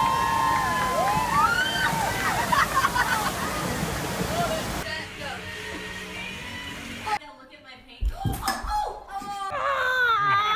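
Steady rush of water from a surf-simulator wave with voices crying out over it. About five seconds in it gives way to a quieter scene, then a brief near-silent gap and a few sharp knocks with voices near the end.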